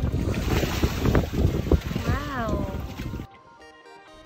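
Wind gusting on the microphone beside the sea, with water washing against the rocks and background music underneath. The wind noise cuts off suddenly about three seconds in, leaving only the music.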